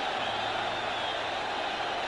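Stadium crowd cheering steadily after a goal, heard through old broadcast sound with a faint low hum.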